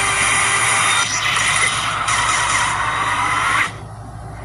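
Action sound effects from an animated TV promo, heard through a television speaker: a loud, dense whooshing rush with a sweeping whoosh in the second half that cuts off suddenly just before the end.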